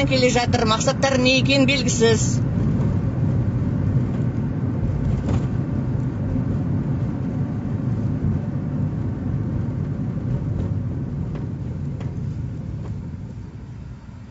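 Steady low rumble of a car's engine and road noise heard from inside the cabin, slowly growing quieter toward the end; a voice speaks briefly at the very start.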